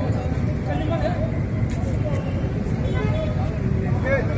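Outdoor street ambience: a steady low rumble with indistinct voices of people talking.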